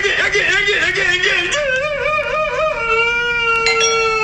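A cartoonish character voice warbling, its pitch wobbling rapidly up and down like a yodel. About two and a half seconds in it settles into one long held note that slowly falls.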